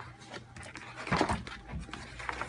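Heavy vinyl wallpaper sample pages in a large sample book being turned by hand, with a papery swish and flap a little over a second in and a softer one near the end.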